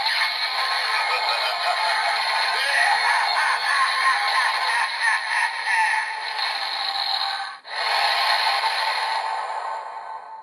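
Bandai DX Evol Driver toy with the Evol Trigger fitted, playing its electronic finisher sound effect through its small built-in speaker: synthesized music and voice with evil laughing, thin and without bass. There is a short break about three-quarters of the way through, then it carries on and fades out.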